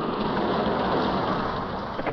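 A car driving up over a dirt yard: a steady rush of engine and tyre noise that swells to a peak about a second in and then eases as it pulls up.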